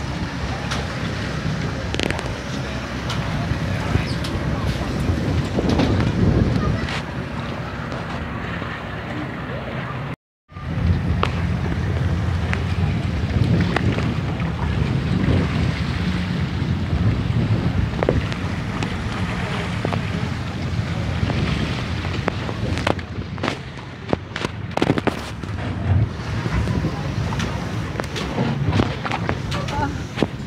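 Wind buffeting the microphone over water lapping and splashing beside a boat, with a low steady hum underneath and people's voices in the background. The sound cuts out for a moment about ten seconds in, and there are scattered sharp splashes or knocks near the end.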